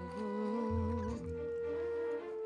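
Soft background music: long held notes over a low pulsing bass, with a slow, wavering melody line moving above them.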